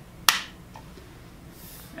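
A single sharp plastic click as the green connection system cover is snapped onto the front of a PowerPact B-frame molded case circuit breaker.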